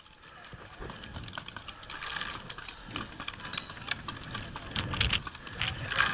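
Wind buffeting the microphone in gusts, strongest near the end, with scattered light clicks and ticks.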